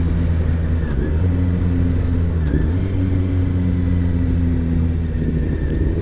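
Honda CBR600 inline-four engine running at steady low revs as the motorcycle is ridden slowly, its pitch holding level.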